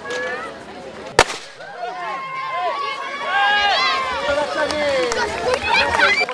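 A single sharp bang about a second in, then a crowd of children's high voices shouting and cheering over one another as they set off running.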